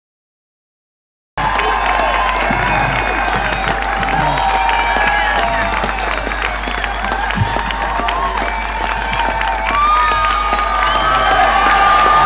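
Silence for about the first second, then a large outdoor crowd cheering, whistling, shouting and applauding, with many overlapping calls and a steady low hum underneath.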